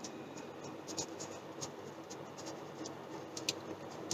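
A pen writing on notebook paper: faint scratching strokes with a few short, sharper ticks.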